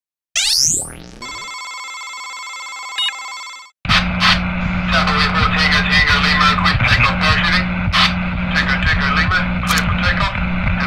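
Electronic intro sound effects: a falling whoosh, then a steady synthetic chord of tones with a short blip, which cuts off abruptly. From about four seconds in, a dense, noisy layer with a steady low hum and indistinct voice-like chatter takes over.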